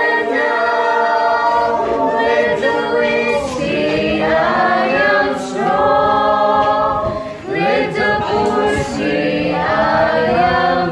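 A small mixed group of young male and female voices singing together a cappella, holding long notes in phrases with brief breaths between them.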